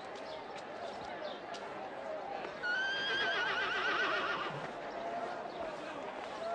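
A horse whinnies once: a quavering call about two seconds long that starts a little before halfway and falls slightly in pitch, the loudest sound here, over a low murmur of voices.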